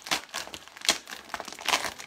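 Shiny metallic plastic mailer crinkling as it is pulled open by hand, in a run of irregular sharp crackles.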